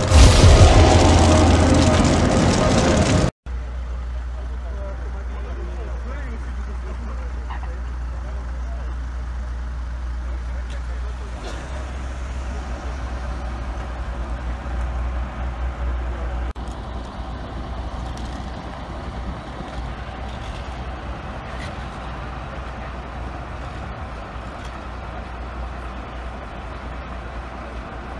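The end of a title jingle, music with a deep boom, cuts off abruptly about three seconds in. It is followed by the steady low rumble of idling vehicle engines at a roadside, with faint voices in the background.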